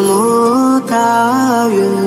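Buddhist devotional chant set to music: a voice sings long held notes that step up and down, with a short break about a second in.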